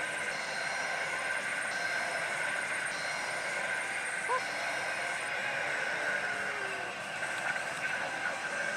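Steady din of a pachislot and pachinko hall: the sounds of many machines blending into one constant noise.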